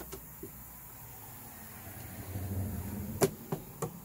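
Knocks on a hollow plastic Halloween skull prop, three sharp ones about a third of a second apart near the end. A faint low hum swells about halfway through.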